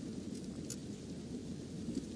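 Faint, steady rain and low thunderstorm rumble from a film's ambient soundtrack.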